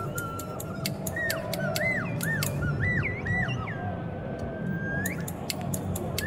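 A slide whistle swooping up and down in short arching glides, then holding one long note that bends upward at the end. Over it, scissor blades snip in a steady rhythm of about two to three sharp clicks a second, pausing briefly in the middle, with a low steady hum underneath.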